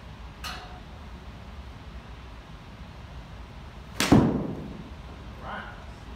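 A golf club strikes a ball off an artificial-turf hitting mat with one sharp crack about four seconds in, fading over about half a second. A lighter click comes about half a second in.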